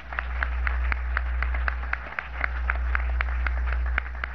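Hands clapping in a steady rhythm, about four claps a second, over a steady low hum.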